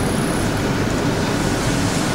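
Steady, even hiss spread from low to high pitches, with a thin high whine that stops about half a second in.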